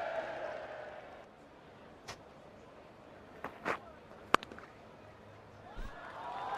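Cricket bat striking the ball once, a single sharp crack about four seconds in, over faint ground ambience.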